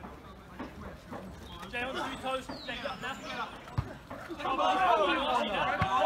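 People's voices talking and calling out at a football match, fainter at first and louder and closer from about two-thirds of the way in, with a couple of short low thumps.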